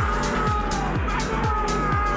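Background electronic music with a steady kick drum about two beats a second, hi-hats, and a gliding melody line above.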